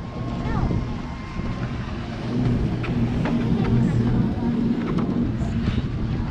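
Steady low mechanical hum of a snow-tubing conveyor-belt lift running as it carries riders and tubes uphill, with a few scattered short clicks.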